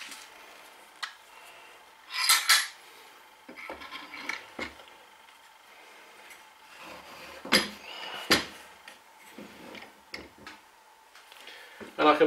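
Metal G-clamps and bar clamps clinking and knocking against each other and the bench as a clamped glue-up is turned over and handled: a loud double clatter about two seconds in, scattered lighter knocks, and two sharp knocks near two-thirds of the way through.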